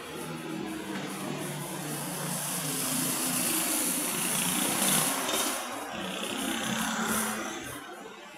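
A motor vehicle passing close by on the street: engine noise that builds, is loudest about five seconds in, and dies away just before the end.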